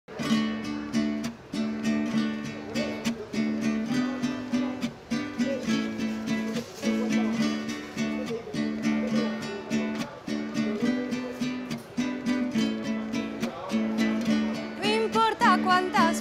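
Song intro on a small acoustic string instrument, strummed in a steady, repeating chord rhythm. A woman's singing voice comes in near the end.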